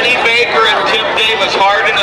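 Mostly a man's voice commentating on the race, over a background of vehicle and crowd noise.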